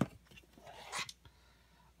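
Plastic DVD cases being handled on a packed shelf: a sharp click at the start, light scraping as a case slides out, and another click about a second in.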